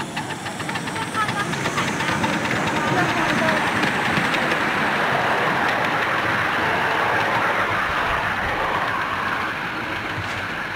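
A 10.25-inch gauge model steam locomotive of the LB&SCR Terrier 0-6-0T type working as it pulls its train past. Its running noise grows louder over the first three seconds, then holds steady.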